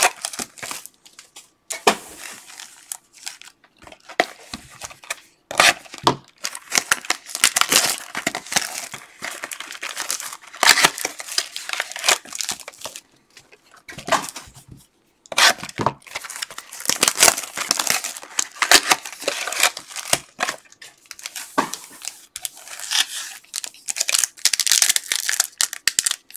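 Foil card-pack wrappers being torn open and crinkled by hand, in repeated irregular bursts with a few short pauses, as packs of Topps Finest soccer cards are ripped.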